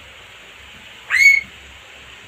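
A single short, loud whistle about a second in, sweeping sharply up in pitch and holding briefly before stopping.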